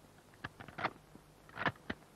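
A quick series of sharp clicks from rifles being handled as they are made safe and checked on command, some in quick pairs, the loudest about two-thirds of the way through.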